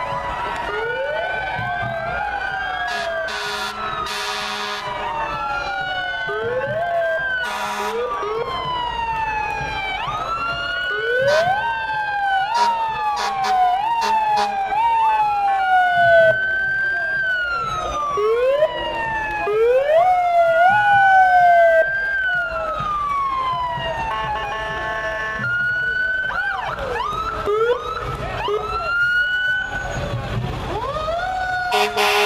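Several emergency-vehicle sirens from fire and rescue vehicles sound together, out of step with one another, switching between long rising-and-falling wails and quick yelps. A few short blasts of an air horn cut in.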